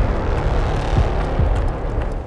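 Rumbling logo-sting sound effect: a dense, bass-heavy rush of noise that eases off slightly as it goes.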